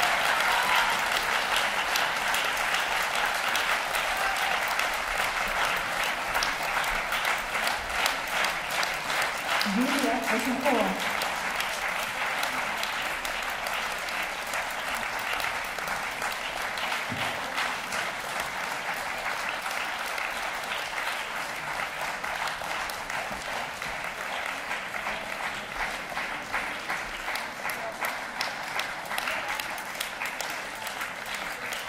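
Audience applauding, a dense steady clapping that eases off slowly. About ten seconds in, a single voice briefly calls out over it.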